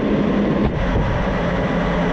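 Steady noise of a military jet in flight: engine and rushing airflow, with a low hum underneath.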